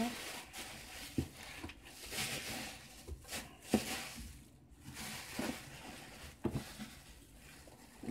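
Faint rustling and scattered light knocks and clicks of a wrapped item being handled and unwrapped, with one sharper click about halfway through.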